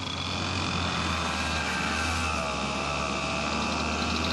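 Racing go-kart engine running at speed around the track, a steady drone whose pitch wavers slightly.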